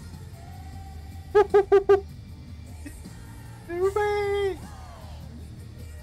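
A man singing along in short "pa" syllables, four quick ones about a second and a half in, then one held note near the middle, over faint rock concert audio.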